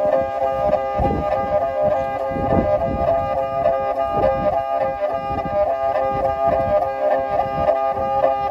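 Kyl-kobyz, the Kazakh two-string bowed fiddle with horsehair strings, played solo with a horsehair bow. It holds one steady high note rich in overtones, while a rough, grainy low rasp from the bow swells beneath it several times.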